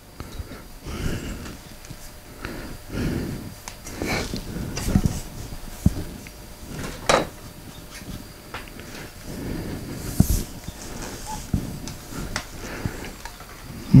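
Boom stand's tubes and joints being handled and assembled on a table: irregular knocks, clicks and rattles, with the sharpest click about halfway through.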